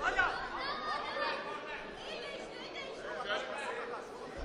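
Chatter of several people's voices talking and calling out over one another in a large sports hall.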